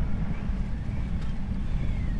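Strong wind buffeting the microphone: a loud, continuous low rumble.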